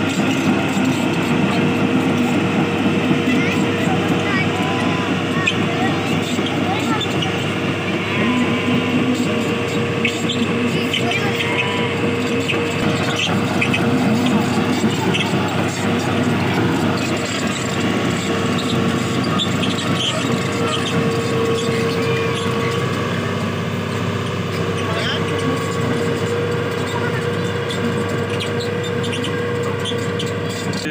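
Hitachi Zaxis 210LCH crawler excavator's diesel engine running steadily as the machine moves on its tracks, with a constant hum held throughout. Voices chatter over the machine noise.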